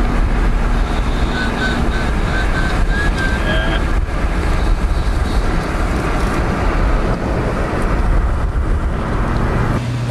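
Road and wind noise of a car driving at speed: a loud, steady rumble with a hiss over it.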